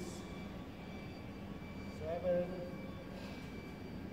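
A steady mechanical hum runs through a large hall, with a few faint constant tones in it. A man counts "eight, nine" aloud about two seconds in.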